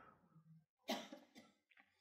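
Near silence, broken about a second in by one short vocal sound from a man at a headset microphone.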